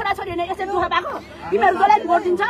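Speech: a woman talking, with chatter from the people around her.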